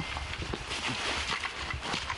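Close, irregular rustling and scuffing of soldiers' clothing and gear, with shuffling footsteps.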